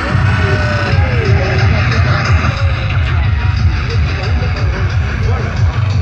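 Loud, bass-heavy freetekno music played over a sound system, with the heavy bass coming in right at the start.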